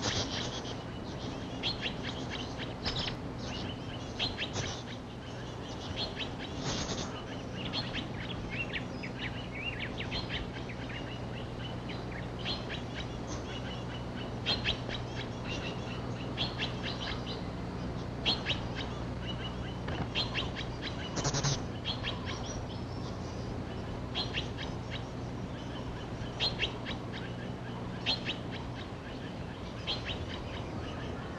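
Birds giving short, sharp calls in quick series, again and again, over a steady low hum.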